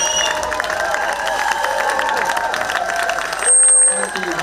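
Audience clapping and cheering, with voices calling out over the applause. Near the end a short, loud steady tone cuts in for about half a second.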